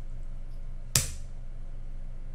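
A single sharp keyboard keystroke about a second in, the Enter key that launches the typed command, over a steady low electrical hum.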